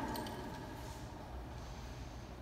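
Quiet room ambience with a faint steady background noise and a few light clicks; the echo of a voice dies away at the very start.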